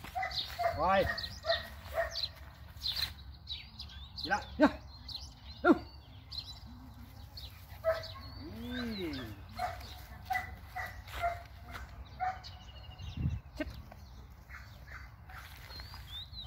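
A German Shepherd barking a few times, with short birdcalls in the background.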